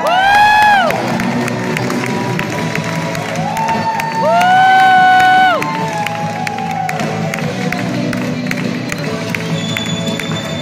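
Country dance music playing, with two long, high whoops from a voice over it: a short one right at the start and a longer, louder one about four seconds in.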